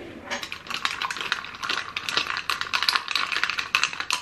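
Metal straw stirring ice cubes in a cup of drink: rapid, irregular clinking and rattling.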